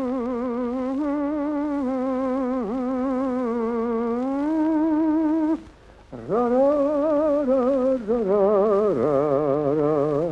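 A man singing a slow melody in long held notes with strong vibrato, without clear words, with a short break about halfway through. Near the end a lower held note joins under the tune.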